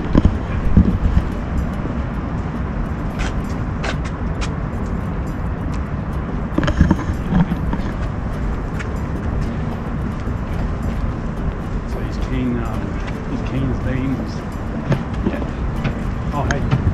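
Steady low rumble of open-air city ambience on a handheld camera's microphone, with a few short clicks and faint voices of passers-by.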